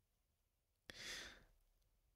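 Near silence, broken about a second in by one short, soft breath into the microphone, the speaker drawing breath before talking again.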